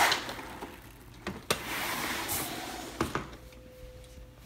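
Cordless fabric blind being pushed up by hand: a click, then the shade fabric and bottom rail sliding with a steady rushing hiss for about a second and a half, and a second click as it stops.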